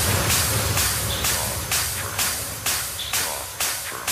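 Techno track in a breakdown: the bass fades out early and a burst of hissing noise repeats about twice a second, each one fading quickly.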